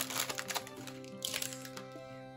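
Small plastic zip-lock bags of diamond-painting drills crinkling and clicking as they are handled, mostly in the first second, over steady background music with held notes.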